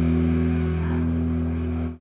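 Electric bass guitar playing along with the rock song's recording, holding a final sustained chord that slowly fades and is then cut off abruptly near the end.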